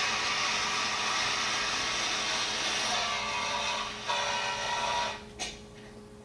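Vehicle engine and road noise from a training film, heard through the room's loudspeakers, running steadily for about five seconds and then dropping away, with a single sharp click near the end.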